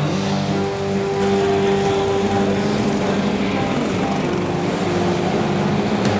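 Several go-kart engines running at once in an indoor kart hall, each holding its own pitch and shifting as the karts rev.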